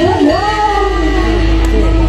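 Live jathilan band music: a melody line slides up and then holds one long note over a steady low bass.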